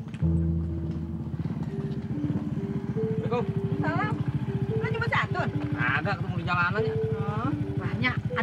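A small motorcycle's engine puttering steadily as it rides up and idles, starting a fraction of a second in, under background music with long held notes. A woman's high, wavering voice calls out several times in the middle.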